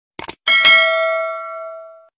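Service-bell 'ding' sound effect: one strike that rings out and fades over about a second and a half, just after a quick double click.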